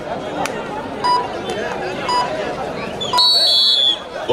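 Kabaddi referee's whistle blown in one high blast of nearly a second near the end, signalling a point, over steady crowd chatter. Two short high beeps sound earlier.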